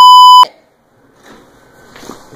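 Censor bleep: a loud, steady, high-pitched electronic beep over a swear word, cutting off abruptly about half a second in.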